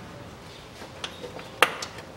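Three short, sharp metallic clicks in the second half, the loudest near the end, as small metal fasteners are handled while a bolt is started by hand.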